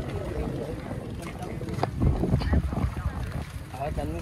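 Wind rumbling on the microphone while walking outdoors, with scattered voices of people nearby. The rumble swells loudest about two seconds in.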